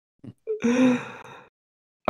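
A person's breathy exhale with a faint voice in it, starting about half a second in and fading out over about a second.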